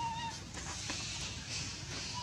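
Infant macaque giving one short, high, whistle-like cry at the very start, over a steady high hiss.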